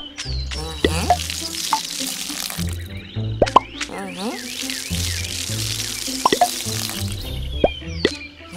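Cartoon background music with a stepping bass line. Several short rising plop sound effects pop in at irregular moments over it, as the cartoon vines sprout and bloom.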